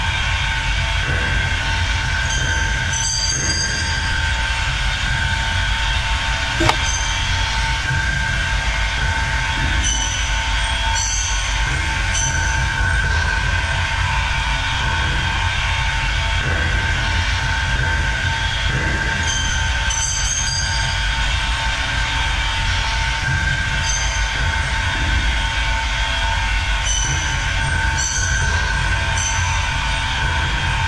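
Steady underwater noise picked up by a camera in its waterproof housing: a constant low rumble with two steady whining tones, and brief high squeaks now and then.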